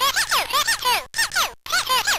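Circuit-bent toy typewriter's sound chip, triggered in a fast rhythm by a Korg Monotribe, giving a rapid stream of short electronic blips, several a second, each bending up and down in pitch. There is a short silent gap about halfway through.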